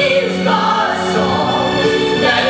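A man and a woman singing a theatrical show-tune duet, holding long notes over musical accompaniment.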